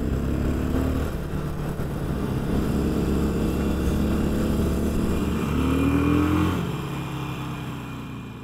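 Motorcycle engine running steadily, then climbing in pitch as it accelerates about five and a half seconds in, before fading out near the end.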